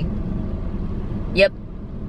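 Steady low rumble of a car idling, heard from inside the cabin. About one and a half seconds in there is a brief vocal sound, and then the rumble drops to a lower level.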